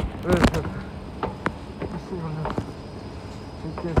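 Indistinct voices in short snatches over a steady low hum.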